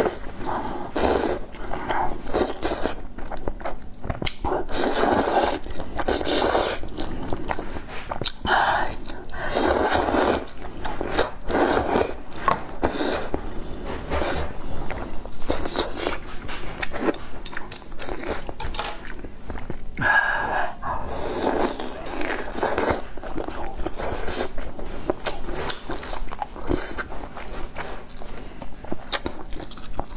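A person slurping rice noodles and broth and chewing, in repeated wet slurps that come every second or two.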